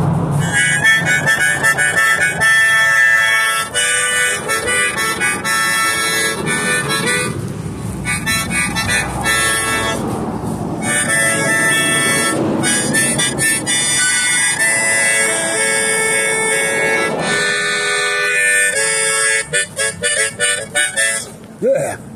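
Harmonica being played: a run of held chords and note changes, broken twice by short breathy, noisy pauses.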